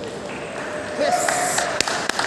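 Hall murmur at a table tennis match, then a loud shout about a second in, followed by a few sharp taps near the end.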